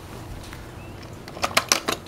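Piston rattling and clicking inside a PVC piston valve housing as the housing is shaken, a quick run of about five clicks near the end, as the piston settles onto its seat.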